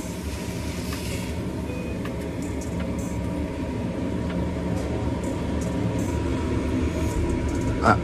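Steady low hum of commercial kitchen equipment at a flat-top grill, with a faint steady whine in it. A few faint metal clicks come from steel spatulas on the griddle as the cheesesteak filling is scooped onto the roll.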